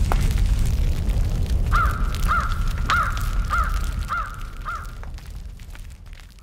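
A crow cawing six times in an even series about half a second apart, over a low rumble with scattered crackles. The sound fades down toward the end.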